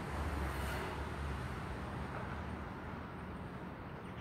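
Steady low rumble, heaviest in the first second and a half and then easing slightly.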